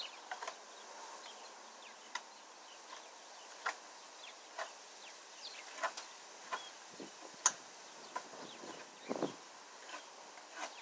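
Faint outdoor ambience: insects buzzing, with scattered short chirps and clicks every second or so.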